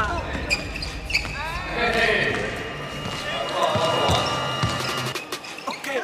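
A basketball dribbled hard on an indoor court, in a run of quick, uneven bounces during a one-on-one crossover sequence.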